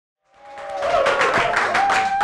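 Audience applauding, fading in just after the start, with a long held tone over the clapping.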